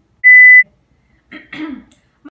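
A single loud, steady, high-pitched electronic beep lasting under half a second, followed about a second later by a short vocal sound.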